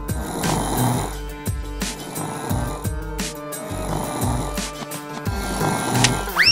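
Repeated cartoon snoring sound effect for the sleeping toy police officer, over background music.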